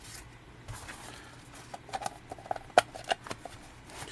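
Discs being pressed back onto the centre spindle of a round collector's disc case and its lid fitted on: quiet rubbing and handling with scattered light clicks, the sharpest about three quarters of the way through.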